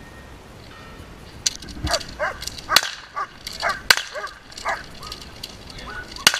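German Shepherd barking in short, repeated barks from about a second and a half in, mixed with several sharp cracks, the loudest about three and four seconds in.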